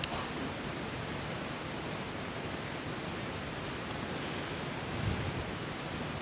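Steady even hiss of background noise with no speech, the constant noise floor of the microphone recording. There is a faint low swell about five seconds in.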